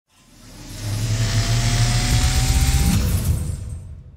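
Intro sound effect for an animated light-tunnel title: a swelling whoosh of hiss over a deep rumbling hum, with a faint rising tone. It builds up from silence over the first second and fades away in the last second.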